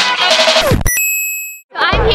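Background music stops, then a single bright bell-like ding rings out and fades within about a second. After a brief silence, the noise of a crowded hall with music comes in near the end.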